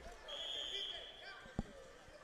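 Referee's whistle blown once, a steady high tone held for about a second, signalling the start of the wrestling bout. A single dull thump follows shortly after.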